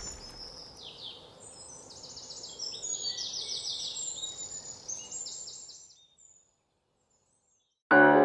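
Songbirds singing in rapid high trills and chirps over a low rumble that fades away, then a moment of silence before music cuts in at the very end.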